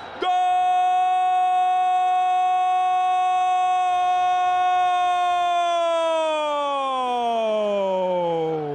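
A male football commentator's long, drawn-out goal shout on one sustained pitch. It holds steady for about five seconds, then slowly falls in pitch as it trails off.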